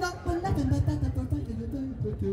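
Music of a busking band playing a reggae cover: a male lead voice scatting over guitar and bass.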